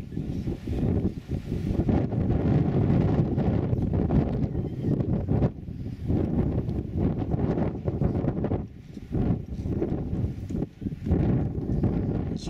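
Wind buffeting the microphone in gusts: a loud, low, uneven rumble that eases briefly a few times.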